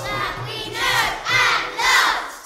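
A class of children shouting together over a backing track with a steady beat, three loud group shouts in the second half, the last the loudest.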